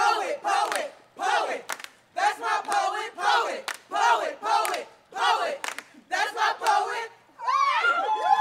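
A group of about ten young people chanting in unison, shouting short rhythmic phrases together with brief gaps between them.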